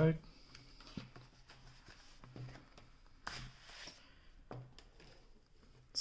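Cardboard folder flaps and a paper poster being handled on a table: quiet rustling with a few light clicks, and one brief sliding rustle about three seconds in.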